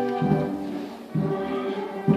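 Slow band music of sustained chords, with a low bass note struck about once a second and a brief dip in volume around the middle.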